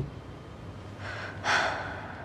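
A woman drawing a deep breath in, loudest about one and a half seconds in, over a faint low hum.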